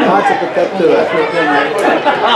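Several people talking at once close by, a loud, continuous overlapping chatter.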